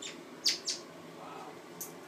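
A young African grey parrot giving two short, sharp, high chirps in quick succession about half a second in, then a briefer, higher one near the end.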